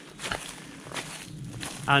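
Faint footsteps of a person walking, two soft steps about two-thirds of a second apart, with a man's voice starting again at the very end.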